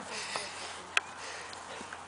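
A dog sniffing in soft, breathy rushes, with a single sharp click about a second in.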